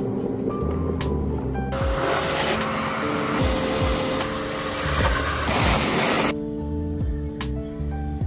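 Wet/dry shop vacuum running with its hose nozzle sucking water off a floor, starting suddenly about two seconds in and cutting off about six seconds in, over background music with steady tones.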